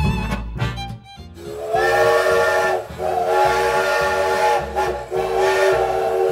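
Steam locomotive whistle blowing three long blasts over hissing steam, the first one shortest. The tail of a country fiddle tune plays in the first second.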